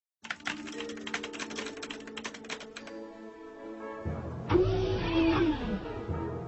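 Sci-fi soundtrack: a fast run of clicks like keyboard typing over a held electronic chord, then about four and a half seconds in a louder low rumble with sweeping tones.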